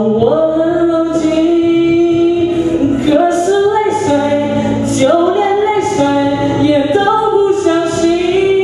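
A solo singer holding long, drawn-out notes into a microphone without clear words, the pitch stepping up and down every second or so.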